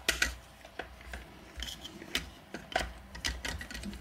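Irregular light clicks and taps from handling an amplifier reverb footswitch's metal switch plate, its housing and wiring during a continuity check.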